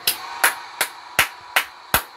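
A man clapping his hands, six sharp claps in a steady rhythm, a little under three a second.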